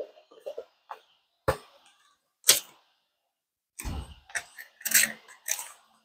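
Pages of a card deck's paper guidebook being leafed through: scattered soft clicks and rustles, a sharper tap about two and a half seconds in, then a run of quicker rustles near the end.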